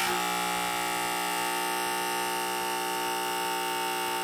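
Water jet gun switched on, its small electric pump giving a steady buzzing hum as it shoots a fine stream of water at 55 psi onto a quartz crystal. The hum starts abruptly and holds an even pitch.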